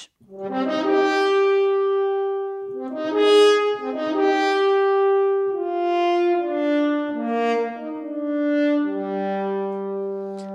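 Sample Modeling virtual French horns, played live from a MIDI keyboard: a slow legato phrase of held, swelling notes, often two or three at once, ending on a low held note that fades.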